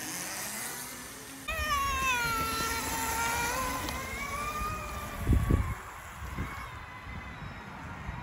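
Electric pocket bike's 2000 W motor kit whining as the bike pulls away, running on a freshly built 48 V 18650 pack. The whine comes in about a second and a half in, drops in pitch, then holds with a rumble under it. A low thump follows a little after five seconds.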